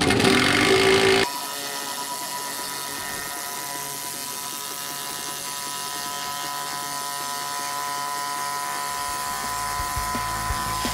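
A steady mechanical whine made of several held tones over a faint hiss, like a small motor running without change. It starts after a brief loud burst with a laugh in the first second.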